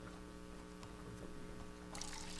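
Steady electrical mains hum on the meeting-room audio feed: a low, constant buzz made of several evenly spaced steady tones.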